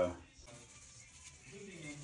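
Mostly quiet room tone, then about one and a half seconds in a soft, low voice starts, held on a fairly steady note.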